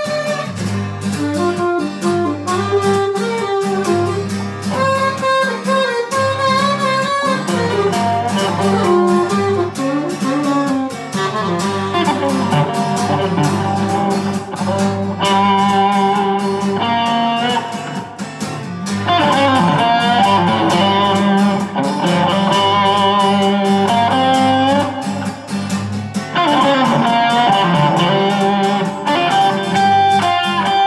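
Electric guitar played continuously, a moving melodic line over a steady accompaniment with a beat and a low bass line.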